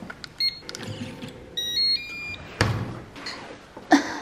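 Digital door lock beeping. A couple of short beeps come as keys are pressed, then about a second and a half in a quick run of beeps at stepping pitches: the unlock tune. A dull thump follows, then a sharp click just before the end.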